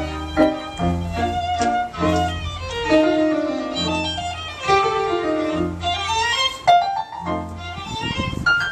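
A string quintet playing live: a violin melody over low bass notes that fall about once a second.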